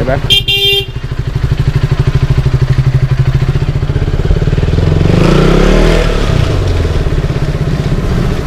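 KTM Duke 200's single-cylinder engine running at low speed in a slow, pulsing beat, with a short horn beep less than a second in. About five seconds in the revs rise briefly, then fall back.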